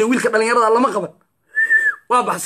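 A man's voice for about the first second, then a short whistled note near the end: one steady high pitch held for about half a second that drops away as it ends.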